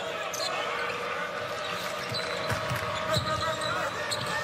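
Basketball game sound in an arena: a ball dribbled on the hardwood court, with a few sharp knocks, over a steady crowd din and a faint steady hum held through most of it.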